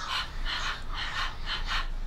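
The phonics sound /h/ said as a string of short breathy puffs with no voice in them, about two a second.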